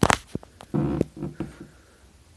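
Clicks and knocks of a phone camera being handled close to its microphone, with a short low buzzing sound in the middle, broken by another click.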